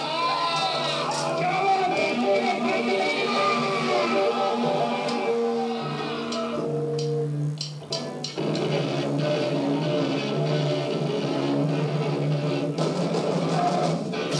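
Rock band music led by electric guitar over a bass line, with a brief drop in level a little past the middle.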